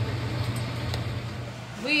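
Steady low hum of a running kitchen appliance's motor or fan, which fades just before a woman starts to speak at the very end.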